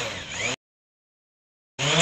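Faint background sound, then a second of dead silence where the recording is cut. Near the end the DJI Go app's synthesized voice prompt starts up loudly, announcing that the home point has been updated.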